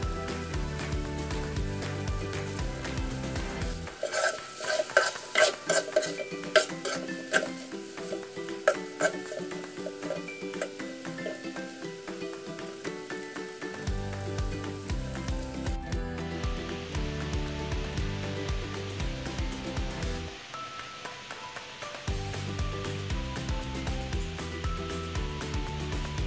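A utensil clinking and scraping against a wok while chicken and carrots in a thick sauce are stir-fried, with a run of sharp clinks from about 4 to 9 seconds in. A soft sizzle of the frying sauce follows in the second half, all over background music.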